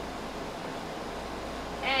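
Steady background hiss of room noise, with a woman's voice starting near the end.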